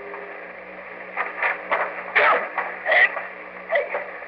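Voices of an old radio drama, the words not clear, over the steady hum and hiss of the old broadcast recording. A held tone ends just as it begins, and the voice sounds start about a second in.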